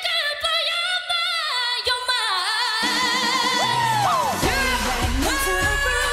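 A woman singing a Korean pop song over a backing track, holding long notes that waver in pitch. A bass line comes in about halfway through, followed shortly by a low beat.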